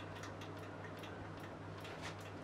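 Quiet room tone: a steady low hum with faint, fast, even ticking.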